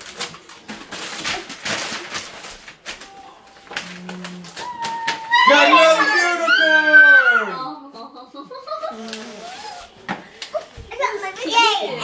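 Tissue paper and a gift bag rustling and crackling as a present is unwrapped, then a young child's loud, high voice that slides down in pitch over about two seconds, with more child babble near the end.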